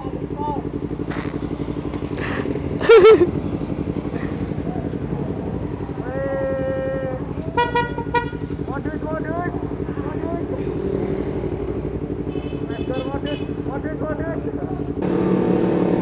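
Motorcycles idling at a standstill, among them a Yamaha MT25 parallel-twin, with a steady, quickly pulsing run. About six seconds in comes a horn toot lasting about a second. Just before the end the engines rise as the bikes pull away.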